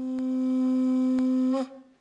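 Conch shell trumpet (Hawaiian pū) blown in one long steady note that breaks off about one and a half seconds in.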